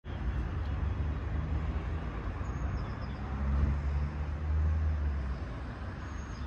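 Steady outdoor rumble, deepest at the low end, swelling louder for a couple of seconds in the middle.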